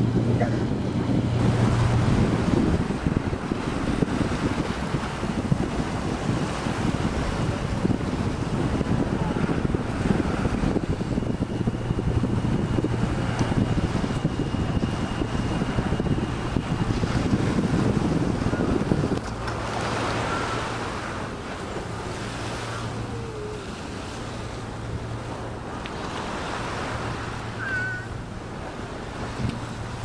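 Wind buffeting the microphone over waves washing along the shore, with a low steady hum from a passing boat's engine. The wind rumble eases noticeably about two-thirds of the way through.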